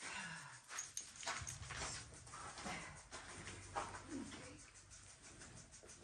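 Dexter heifer eating hay from a feeder, with rustling and crunching throughout. A low, closed-mouth moo begins about a second in and lasts about two seconds.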